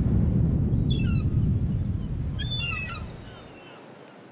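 A sound-effect bed under a logo intro: a low, rumbling wash like surf that fades out over the last two seconds. Short bird calls sound about a second in and again about two and a half seconds in.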